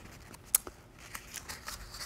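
Sheets of paper handled close to a microphone: a few soft clicks and rustles, one sharper click about half a second in, over quiet room tone.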